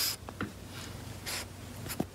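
French bulldog snuffling and rubbing its face into a fleece blanket: a few short scratchy rustles, one at the start and another just past the middle.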